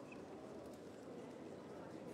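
Faint, indistinct chatter of people talking quietly in a hall, with light clicks and shuffling of movement.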